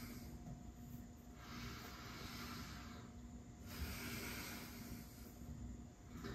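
Faint breathing: two long, hissy breaths of about two seconds each, the first starting about a second and a half in, over a steady low room hum.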